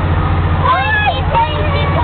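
A steady low motor hum runs throughout, with high-pitched voices talking indistinctly over it from just over half a second in.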